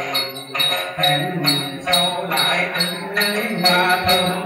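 Đàn tính gourd lute being plucked in a steady rhythm, with a cluster of small jingle bells shaken on the beat about twice a second.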